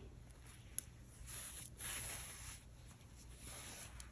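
Faint rustling of bulky wool yarn and the crocheted fabric as a plastic yarn needle is worked through the top stitches of the hat and the yarn is drawn through, with one small click just before a second in.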